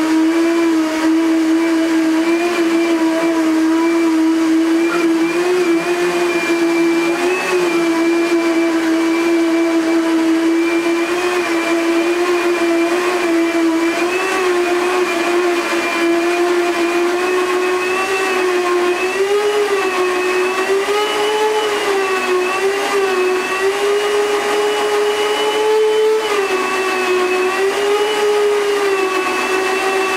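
Blendtec high-speed blender running hard, puréeing canned black beans and water into a creamy bean spread. Its steady motor whine wavers and creeps a little higher in pitch in the second half.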